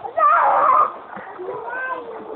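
A child's loud, high-pitched shout lasting under a second, followed by softer voices.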